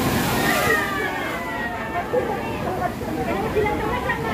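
A sea wave breaking and splashing against the rocks at the mouth of a sea cave, loudest in the first second, with people's voices over it.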